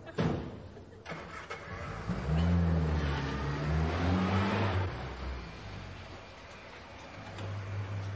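A car door shuts with a sharp knock, then a Mini's small engine starts and revs as the car pulls away, its pitch rising and falling. Near the end it settles to a steady hum.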